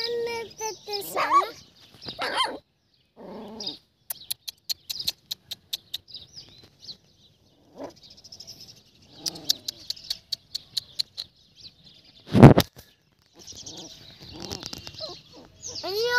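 Dogs barking during a dog fight, in scattered short bursts with stretches of quiet between. There is a run of rapid clicks about four to seven seconds in, and one loud, sharp sound about twelve seconds in.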